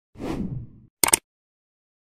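End-screen sound effects: a whoosh that sweeps down in pitch over the first second, then a short, sharp double click about a second in, as for a mouse click on an animated like or subscribe button.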